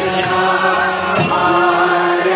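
Kirtan: voices chanting a mantra as sustained, gliding sung lines over music, with a bright metallic stroke about once a second.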